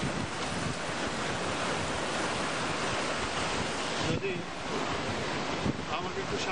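Ocean surf washing onto the shore with wind buffeting the microphone, a steady rush that eases briefly about four seconds in.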